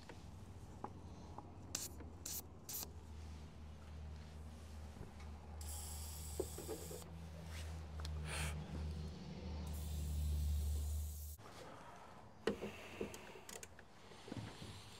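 Aerosol spray can hissing in two bursts, about six seconds in and again near the end, sprayed onto the rusted, seized window-regulator bolts inside a truck door. A low steady rumble runs underneath and cuts off suddenly near the end.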